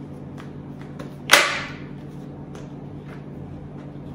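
Plastic legs of an OXO 2-in-1 travel potty being folded shut and handled: one sudden, sharp snap about a second in that fades quickly, with a few faint plastic clicks around it.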